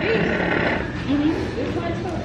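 People's voices at a table: laughter and low talk, with a drawn-out, wavering voiced sound about halfway through.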